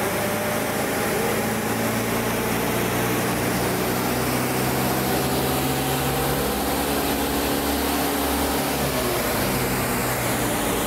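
Lada car engine running at high revs in fourth gear, driving the jacked-up rear axle so a road wheel spins freely in the air. It is a steady drone whose note changes about six seconds in.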